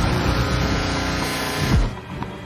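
Trailer sound-design drone over a title card: a low hit opens a steady, loud buzzing hum with many held tones, which cuts off just before the next shot.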